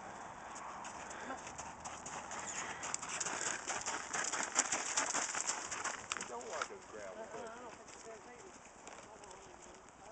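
Hoofbeats of a ridden Rocky Mountain Horse on gravel: a quick run of hoof strikes that grows louder as the horse passes close, is loudest about halfway through, then fades as it moves off.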